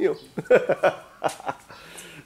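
Men's voices and a short burst of laughter after a joke, in a few choppy bursts about half a second in.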